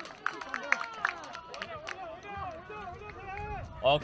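Several voices calling and shouting across a football pitch, fainter than the commentary, with a few short sharp clicks among them.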